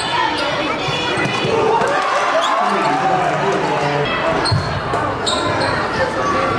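A basketball bouncing on a hardwood gym floor during play, mixed with the voices of players and spectators echoing in the hall and a few short high squeaks in the second half.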